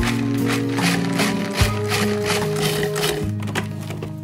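Upbeat background music: a stepping bass line and melody over a quick steady beat of about four strikes a second.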